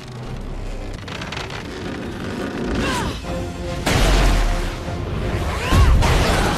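Action-film music with heavy booming impact sound effects from an animated fight: a sudden deep hit about four seconds in and a louder one near the end, each led in by a short swoosh.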